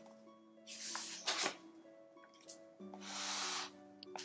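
Paper rustling twice as a picture-book page is turned, once about a second in and again about three seconds in, over soft background music.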